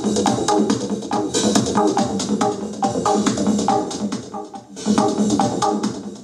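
Analog modular synth playing a fast repeating electronic sequence with drum-like hits. Its filter cutoff is run by a light-dependent resistor pedal, so the treble opens and closes as light on the cell changes. The sound briefly drops about three-quarters through.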